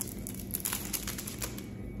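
Quick light plastic clicks and taps as a poly gel nail brush and its cap are handled in long-nailed fingers, several in a row through the middle.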